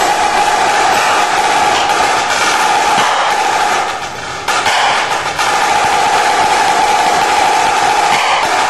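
Marching snare drum played solo with sticks: fast, dense rolls and rudiments that ring with a bright snare buzz. The playing drops back briefly about four seconds in, then a loud roll resumes.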